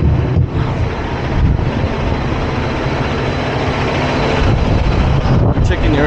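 Freightliner Cascadia semi-truck's diesel engine idling steadily, with wind buffeting the microphone.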